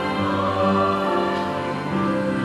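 Choir singing a slow hymn in held notes, the chords changing every second or so.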